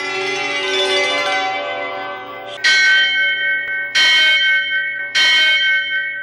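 A sustained musical chord, then a large bell struck three times about a second and a quarter apart, each strike ringing on and fading, like a temple bell sounding as the shrine doors open.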